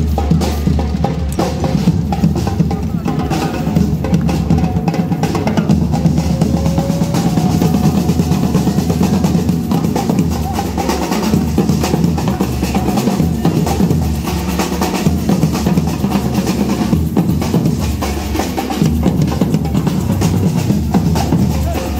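A group of marching drummers beating bass drums with mallets and snare drums with sticks in a fast, continuous rhythm.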